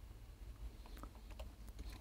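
A few faint, irregular computer keyboard clicks over a low, steady background hum.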